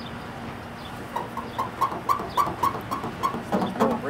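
A cotton rag squeaking in a quick, regular rhythm, about four squeaks a second, as it is rubbed hard back and forth over a car hood's painted surface to scrub off graffiti.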